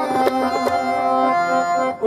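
Harmonium and tabla playing Sikh kirtan: sustained reed chords on the harmonium with a few tabla strokes over them.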